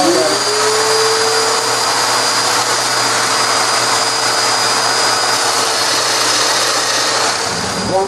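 Festool Domino joiner running with its dust extractor connected while cutting a mortise in a walnut leg: a loud, steady rushing hiss with a high whine, and a lower tone that rises just after the start as a motor spins up. Near the end the sound eases slightly.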